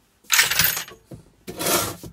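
Two short bursts of metallic clattering and rattling, about a second apart, from tools being handled on a workbench.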